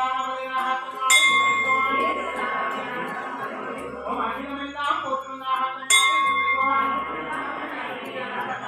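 Brass temple bell struck twice, about a second in and again near six seconds in, each strike ringing on for several seconds, over ongoing chanting of the archana.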